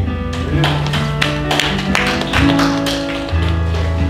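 Live worship band music: held bass notes and sustained keyboard chords, with a series of sharp percussive strikes in the first half.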